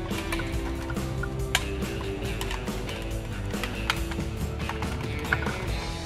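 A few sharp plastic clicks as a plastic pry tool works apart the housing of a 2003 Chevy Tahoe master power window and door lock switch, the loudest about one and a half seconds in. Background music plays steadily underneath.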